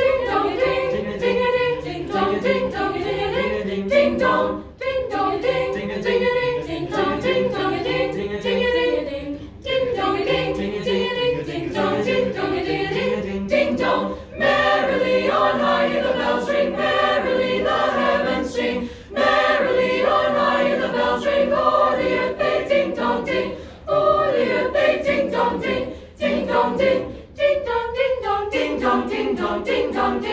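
A group of teenage students singing a Christmas carol together a cappella, with no instruments; the singing pauses briefly between phrases several times.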